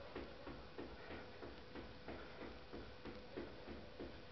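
Light, rhythmic footfalls of sneakers on a rug-covered floor, about three steps a second, from quick bouncing footwork.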